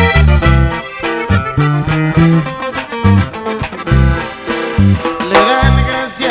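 Instrumental passage of a norteño corrido: accordion playing the melody over deep bass notes on a steady beat.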